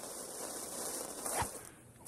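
A steady hiss with a single sharp click about one and a half seconds in, fading out shortly before the end.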